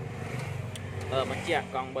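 A man talking in Khmer over a low steady hum, with a few faint light clicks in the first second as the tuk-tuk's brake pedal is pressed.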